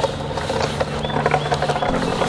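Wheel at the foot of a carried wooden cross rolling along asphalt: a steady low hum with many faint, rapid clicks.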